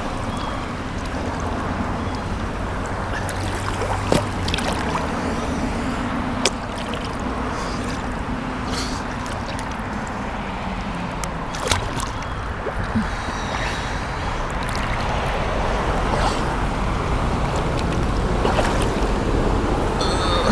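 Lake water sloshing and splashing close to the camera as people wade and swim through it, with a few brief knocks.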